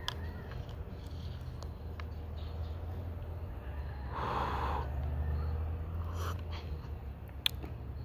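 A person taking a noisy slurping sip of tea, lasting about a second, about four seconds in, over a steady low rumble.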